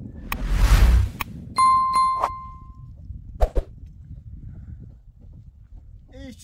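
A brief rush of noise, then a metal object struck with a clear ringing ding that fades over about a second, a second clink just after, and a short knock a little later: metal being handled at a steel water barrel.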